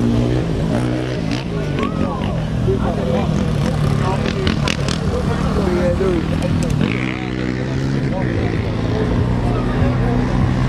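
Voices talking in the background over a steady, low engine hum.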